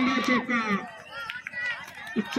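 A man's voice calling out loudly in drawn-out tones for the first second, then fainter, scattered voices of onlookers.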